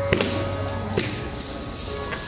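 Kathak dancer's ankle bells (ghungroo) jingling as she turns, with two sharp strikes about a second apart, during a lull in the tabla.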